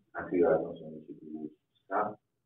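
A man's voice speaking, a drawn-out low-pitched word trailing off about one and a half seconds in, then a short word starting right at the end.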